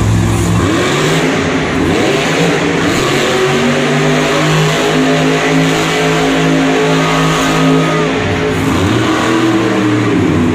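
Race Ace monster truck's engine revving hard while it spins donuts on the dirt floor. The pitch sweeps up in the first couple of seconds and holds high and steady for several seconds. It drops about eight seconds in, then climbs again near the end.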